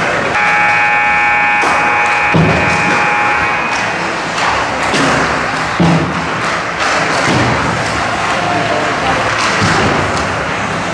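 Ice hockey play at a rink: skates scraping on ice, with sharp thuds from sticks, the puck or bodies meeting the boards, the loudest about six seconds in. A held chord of several steady tones sounds over it for about three and a half seconds just after the start.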